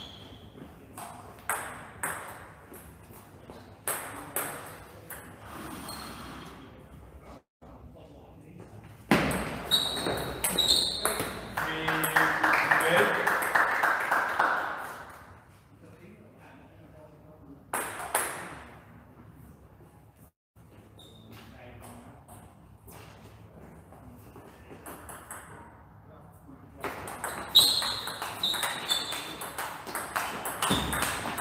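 Table tennis ball clicking on bats and table: scattered single taps between points, then a quick rally of hits and bounces near the end.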